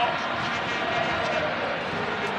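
Steady stadium background noise on a football broadcast: an even hiss with faint distant voices under it.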